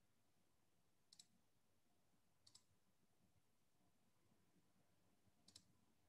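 Near silence broken by three faint pairs of quick clicks from a computer mouse: about a second in, again a second or so later, and near the end, while a technical problem on the computer is being sorted out.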